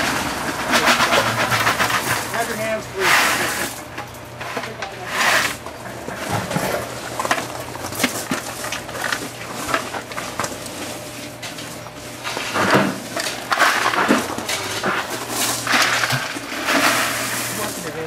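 Gravel clattering and rattling in a plastic bucket, then tipped out onto a gravel bed near the end, with people talking in the background.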